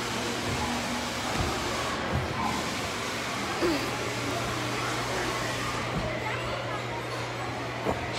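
Steady background din of a large indoor public hall, with a low hum running under it and a few soft low thumps.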